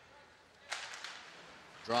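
A sharp crack of hockey sticks striking the puck and ice as the puck is dropped at a face-off, about two-thirds of a second in, followed by a hiss of skates scraping the ice.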